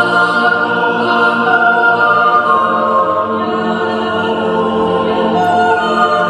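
Mixed yodel choir of men's and women's voices singing a cappella in several parts, on long held chords that change now and then.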